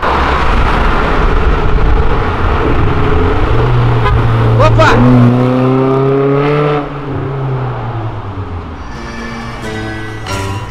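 A car accelerating hard on the street, its engine note loud and rising in pitch, then dropping away suddenly about seven seconds in.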